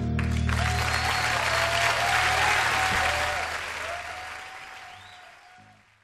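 A concert audience applauding and cheering at the end of an acoustic song, with a few wavering shouts over the clapping; the applause fades out over the last couple of seconds.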